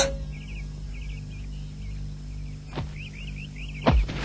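Bird chirping in short repeated chirps over a steady low hum. A brief swish comes about three quarters of the way through, and a sharper knock, the loudest sound, just before the end.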